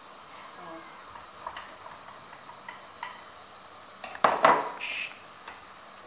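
A spoon scraping peeled tomatoes out of a bowl into a stainless-steel pan, with light taps and clinks of utensil on dish and pan. There is one louder clatter about four seconds in.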